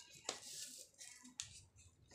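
Sheet of A4 paper being handled and creased by hand, with soft rustling and two sharp crackles of the paper, one shortly after the start and one just past the middle.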